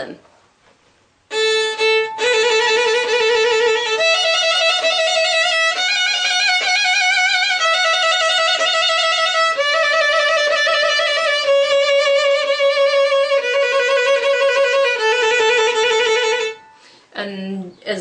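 Violin played with the bow in sustained trills, each note rapidly alternated with the note above it. The trilled notes change every couple of seconds, climbing at first and then stepping back down, and stop a second or so before the end.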